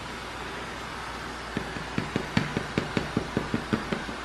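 KitchenAid stand mixer running on low with a steady motor hum as its flat beater turns banana bread batter. A bit over a second in, a light regular knocking joins it, about five knocks a second.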